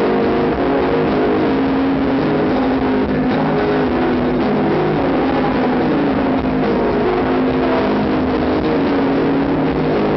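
Live dark dream-pop band with a female singer, recorded from the audience: a loud, steady, dense wash of band and voice, with held notes that slide slowly in pitch.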